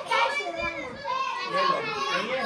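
A group of young children talking and calling out excitedly all at once, their high voices overlapping in a lively chatter.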